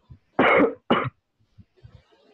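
A person coughing twice, about half a second apart, the first cough longer than the second.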